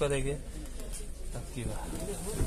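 Speech: a man's voice finishing a phrase, then a quieter stretch with a short murmur near the end.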